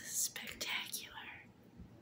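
A person whispering briefly, about a second of breathy speech at the start, followed by faint room sound.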